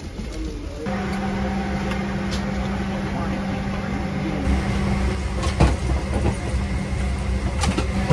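Steady low hum and rumble of an airliner cabin, with a steady tone that comes in about a second in and a couple of sharp knocks near the end.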